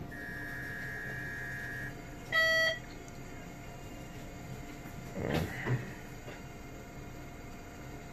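Portable X-ray machine signalling an exposure: a steady high tone for about two seconds, then a short, loud beep.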